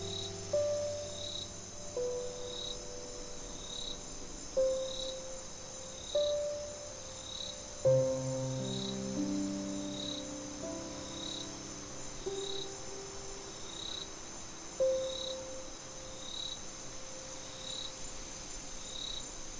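Slow, sparse solo piano notes, with a fuller low chord about eight seconds in, over a bed of crickets: a continuous high trill and a shorter chirp repeating about once every second.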